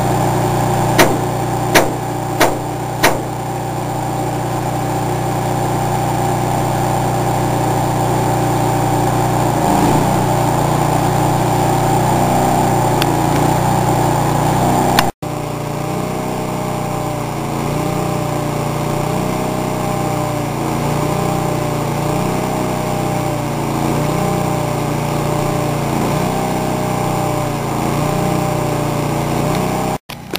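Engine-driven welding machine running steadily at constant speed, with a few sharp clicks in the first three seconds. The sound breaks off abruptly about halfway through, then the engine runs on with a slight regular waver in pitch.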